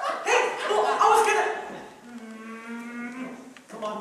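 A person imitating a cow's moo: loud, sliding vocal calls, then one long, steady low moo in the second half.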